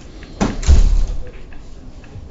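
A door shutting: a sharp knock about half a second in, then a heavy low thud that dies away within about half a second.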